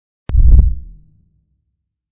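Intro sound effect: a sharp click followed by a single deep boom that dies away within about a second.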